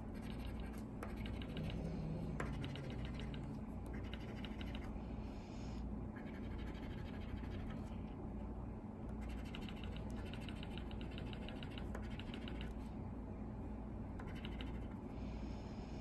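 A coin scratching the coating off a paper scratch-off lottery ticket, in short bursts of quick back-and-forth strokes with brief pauses between.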